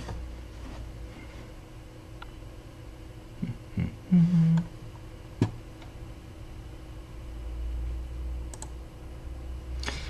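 Quiet room tone with a few short computer clicks, the sharpest about five and a half seconds in, and a brief low hum of a man's voice just before it.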